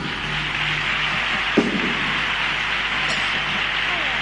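Theatre audience applauding steadily as a carnival comparsa's choral piece ends, with a brief louder shout from the crowd about one and a half seconds in.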